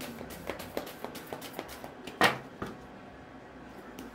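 Tarot cards being shuffled by hand: a run of quick light card slaps, with one louder snap a little past halfway, then quieter handling.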